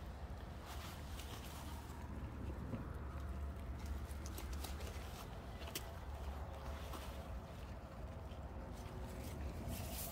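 Outdoor background: a steady low rumble with faint scattered rustles and a few light ticks, as of someone moving about among dry straw mulch in a garden.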